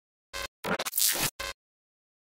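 Scratchy sound-effect bursts in dead silence: a short one, a longer one lasting well over half a second, then another short one.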